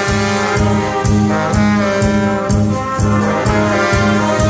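Live brass band of trombones, trumpets and saxophone playing a loud ensemble passage over drums, with a steady beat about two hits a second.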